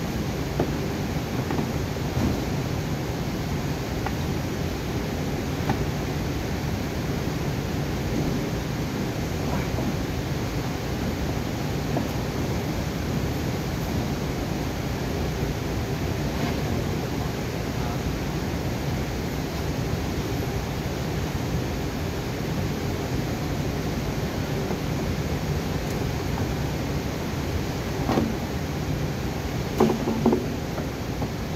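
Steady low hum of a large auto repair shop, with a few light clicks and knocks from car parts being handled, the loudest two near the end.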